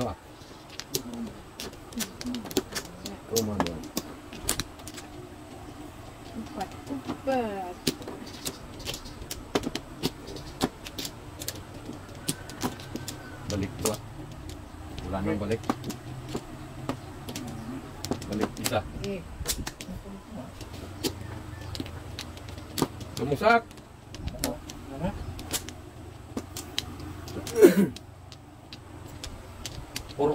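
Plastic mahjong tiles clicking and knocking as they are drawn, discarded and set down on a felt-topped mahjong table: many short, sharp clicks at irregular intervals. Voices talk briefly now and then in between.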